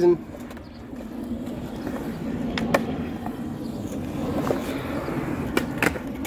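Skateboard wheels rolling on smooth concrete, a steady growing rumble, with a few light clicks midway. Near the end come two loud clacks as the board pops up onto a concrete ledge.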